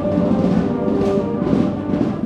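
Brass band music with drums: several held brass notes over steady percussion.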